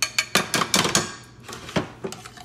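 Metal serving spoon and pans clinking and knocking: a spoon striking the side of a stainless steel saucepan on the stovetop. There is a quick cluster of clatters in the first second and one more knock near the end.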